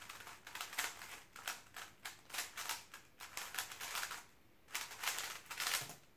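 GAN 354 M magnetic speedcube being turned at speed in a solve: rapid runs of plastic clicking turns broken by short pauses, stopping just before the end as the solve finishes.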